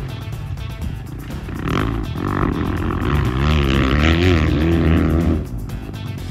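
Background music over dirt bike engines revving up and down. From about three seconds in the engines grow louder with a wavering pitch, then drop away suddenly near the end.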